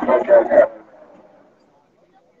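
A person's loud shout close to the microphone, lasting under a second at the start, then fading into faint background sound.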